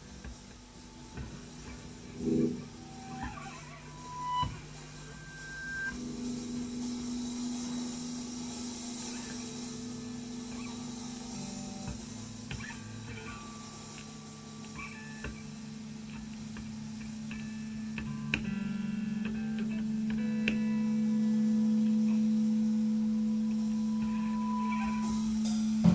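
Sparse, spacey improvised electric guitar music: a few short held notes early on, then a long sustained low note from about six seconds in that grows louder toward the end, with scattered faint taps.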